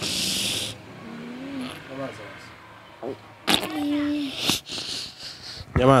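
A woman crying: a loud shaky breath in at the start and a faint whimper, then, about three and a half seconds in, a sudden sob breaking into a held moan, followed by another noisy breath.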